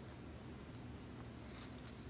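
Quiet room with a faint low hum and a few faint small taps and rustles from hands pressing a glued rock onto a styrofoam ball.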